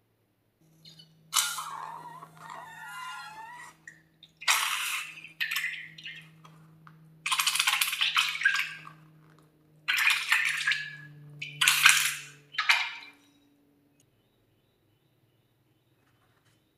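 Slime being squeezed out of the cut neck of a water balloon into a glass dish: a run of about six wet squelching bursts, some with a wavering squeak of air forced through the latex neck, stopping about 13 seconds in.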